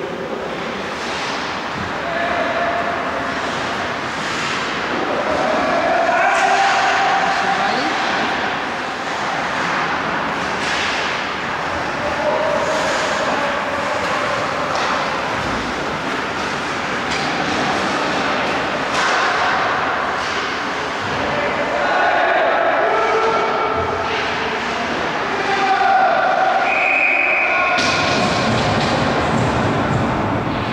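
Ice hockey play heard from rinkside: players calling and shouting to each other, with scattered knocks of sticks, puck and boards.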